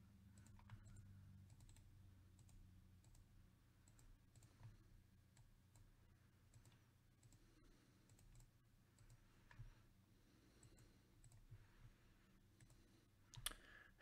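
Near silence with a faint low hum and scattered faint computer mouse clicks, a few seconds apart, as menus are worked in a spreadsheet.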